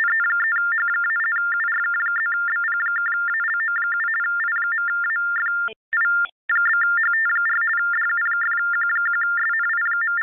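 Loud steady electronic tone with a rapid stuttering crackle running through it: a garbled audio glitch on a video-conference call, audio that "got a little crazy". It drops out briefly about six seconds in, then resumes.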